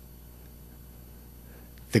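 Quiet room tone with a steady low hum; a man's voice comes back in at the very end.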